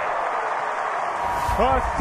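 Ballpark crowd noise, a steady mass of voices reacting to a three-run home run. A man's voice comes in near the end.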